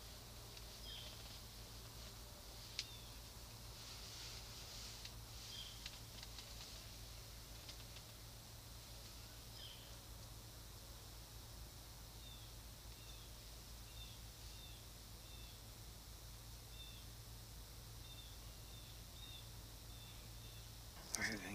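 Faint woodland ambience with small birds chirping: short high chirps now and then, coming in quick runs through the second half. One sharp click about three seconds in.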